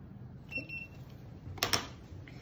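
A short electronic beep from a handheld infrared thermometer, followed about a second later by two sharp knocks close together.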